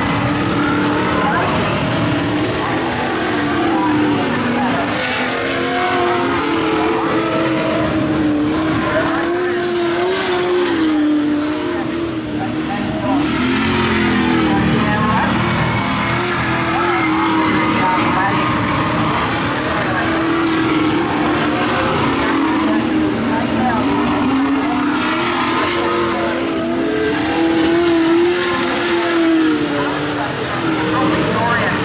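AMCA modified sedans racing on a dirt speedway oval, several engines running hard, their pitch rising and falling as the cars accelerate down the straights and back off into the turns.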